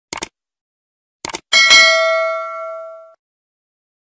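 Subscribe-button animation sound effect: two quick mouse clicks, two more about a second later, then a bell-like notification ding that rings out for about a second and a half.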